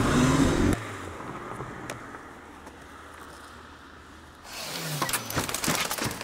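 A motor vehicle's engine running, cut off abruptly just under a second in. A quieter hiss follows, and from about four and a half seconds in a run of knocks and clatters.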